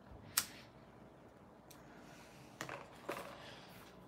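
Quiet room with one sharp click about half a second in, followed by a few faint, soft noises.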